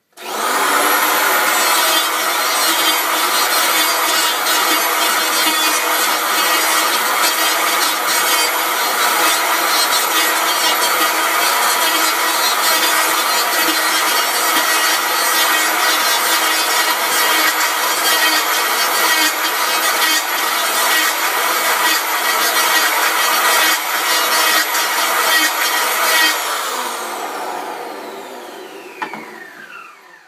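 Electric hand planer cutting a maple cue shaft blank: the motor starts at once and runs steadily, with the rasp of a light cut. It is switched off about four seconds before the end and spins down with a falling whine.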